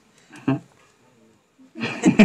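A man's voice: one short vocal sound about half a second in, then a pause, and speech starting again near the end.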